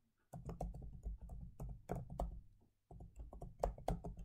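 Typing on a computer keyboard: a run of quick, irregular key clicks, with a short break about three seconds in.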